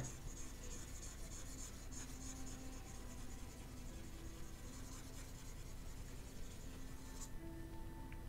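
Stylus scratching across a graphics tablet in quick, repeated strokes. It stops abruptly near the end. Faint music plays underneath.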